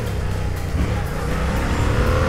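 Yamaha MT-07's parallel-twin engine running at low town speed, heard from the rider's seat, as the bike eases off from about 40 to 33 km/h.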